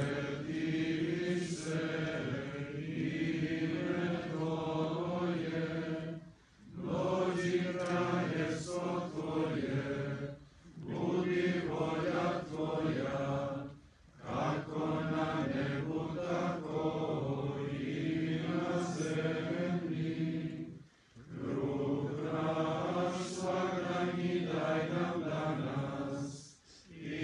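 A group of voices chanting a prayer together in unison, in phrases several seconds long with short pauses for breath between them.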